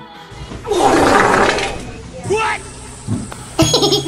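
A loud rushing noise swells and fades over about a second and a half, followed by a few short voice sounds near the end.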